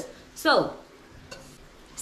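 A woman says a drawn-out "so" with falling pitch, then a quiet pause with faint handling noise and a faint click as a ceramic planter is lifted off the floor.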